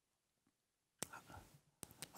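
Near silence in a pause of a man's speech, with a faint mouth click and a soft breath about a second in, just before he speaks again.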